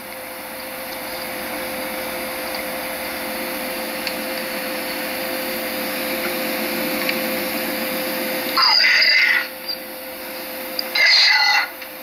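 Portable cassette recorder playing back a tape through its small speaker: steady tape hiss with a constant hum tone, then two short, loud, distorted bursts about eight and a half and eleven seconds in. The bursts are presented as a spirit voice (EVP) and captioned "Eu não você".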